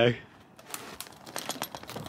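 Military truck's tarp cover rustling and crinkling as it is handled and pulled open, with a scatter of short sharp clicks.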